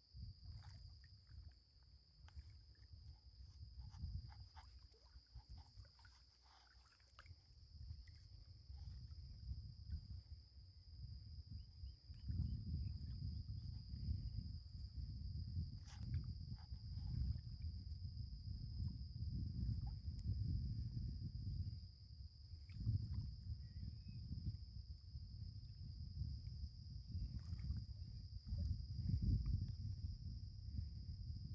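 Insects drone steadily in one continuous high note. Gusts of wind rumble unevenly on the microphone, heavier from about twelve seconds in.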